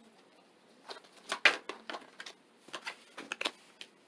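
Tarot cards being handled and laid down on a marble tabletop: a cluster of short card slaps and taps about a second in, the loudest of them near the middle, then a second cluster a little later.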